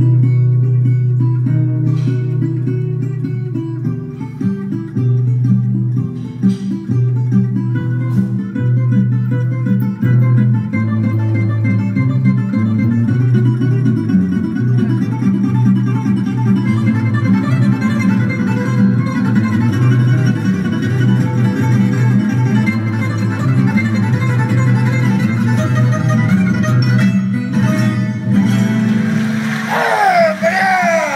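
Recorded guitar music playing continuously, plucked guitar notes over a sustained low line, the higher notes growing busier from about halfway through.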